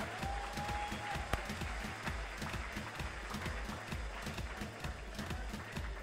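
Audience applauding, a dense, even patter of many hands clapping.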